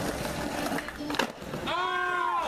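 Skateboard wheels rolling over concrete, with a sharp clack from the board about a second in. Near the end a person's voice calls out one long held note.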